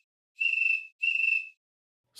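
Cricket chirp sound effect from theCRICKETtoy iPhone app on its slow, completely dry setting, with no reverb. Two high, trilled chirps of about half a second each come one right after the other, each cutting off cleanly into silence.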